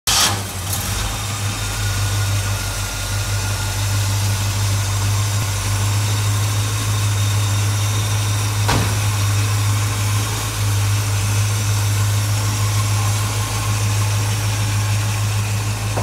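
A 1969 Chevrolet K5 Blazer's carbureted engine idling steadily. A brief loud burst opens the sound, and a single sharp click comes about halfway through.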